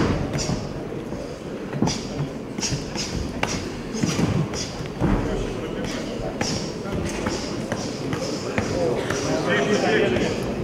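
Ground-and-pound punches landing on a downed fighter as a series of short dull thuds, under shouting voices from the crowd and corners.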